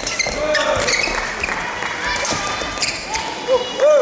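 Badminton doubles rally on an indoor court: shoes squeak in short arcs and feet thud on the court, with sharp clicks from rackets or footfalls. The loudest squeak comes near the end.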